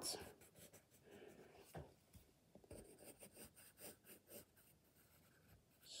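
Faint scratching of a soft 5B graphite pencil on paper: many short strokes blacking in the edge of a drawn square.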